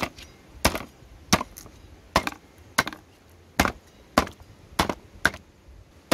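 Cleaver chopping a goose carcass, ribs and bone included, on a round wooden chopping block: about nine sharp strikes at a steady pace, roughly one and a half a second.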